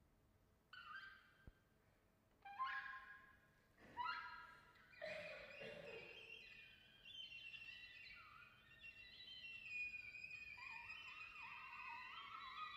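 An oboe and an English horn playing quietly in bird-call figures: a few short separate phrases with slides first, then from about halfway longer, wavering lines that overlap as both instruments sound together.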